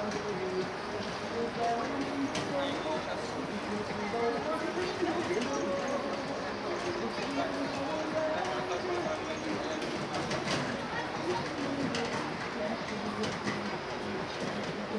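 City street ambience at a busy intersection: passersby talking indistinctly, over a steady wash of traffic noise, with a few scattered clicks.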